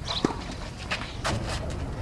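Tennis on a clay court: a few short, sharp knocks of the ball off rackets and the court, spread over about two seconds, over a low steady outdoor rumble.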